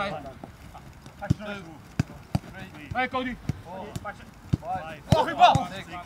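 Footballs being kicked in a passing drill on a grass pitch: sharp, irregular thuds about once a second. Players shout between the kicks, loudest near the end.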